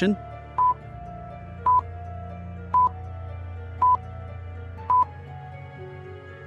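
Countdown timer sound effect: five short, high beeps about a second apart, over soft sustained background music.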